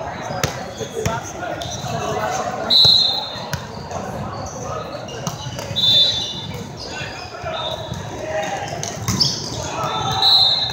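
Indoor volleyball play in a large, echoing hall: volleyballs being struck and bounced, with short shrill tones cutting through, the loudest about three and six seconds in, over a steady murmur of many voices.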